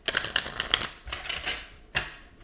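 A deck of cards shuffled by hand: a dense run of rapid flicking clicks for about the first second, then looser flutters of cards.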